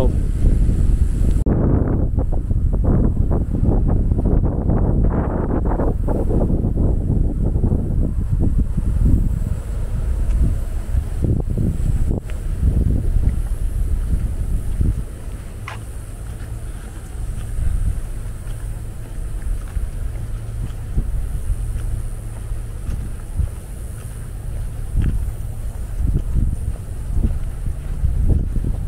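Wind buffeting the microphone: a heavy, gusting low rumble that eases off about halfway through.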